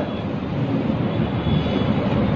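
A steady, low rumbling noise with no speech in it.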